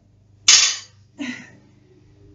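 A loaded barbell hits the gym floor with a loud bang about half a second in, then lands again more weakly from its bounce just after one second.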